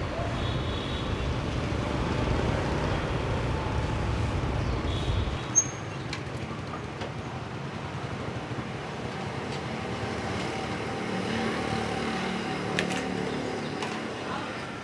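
Riding on a motorbike in city traffic: a low rumble of engine and wind that stops abruptly about five seconds in. It gives way to steady street traffic noise.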